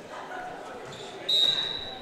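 Referee's whistle: one steady, high-pitched blast of about a second, starting past the middle, the signal that authorises the server to serve. Under it, a murmur of voices in a large gym.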